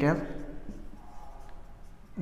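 Marker pen writing on a whiteboard: faint strokes as letters are written, after a man's spoken word ends in the first moment.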